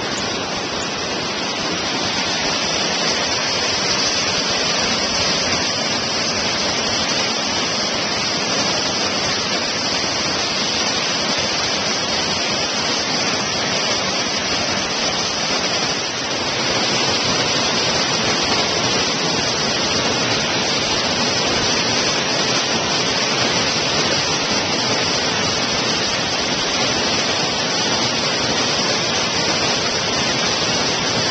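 Waterfall, a steady, loud rush of falling water that dips briefly about halfway through.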